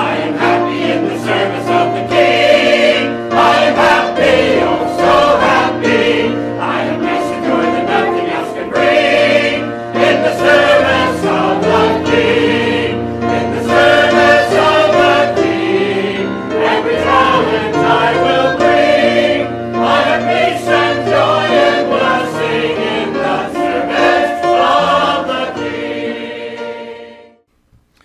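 A mixed church choir of men's and women's voices singing a gospel hymn together. The singing stops abruptly about a second before the end.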